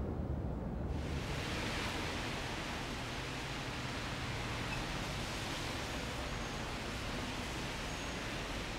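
Steady outdoor background noise: a low rumble, then from about a second in an even hiss.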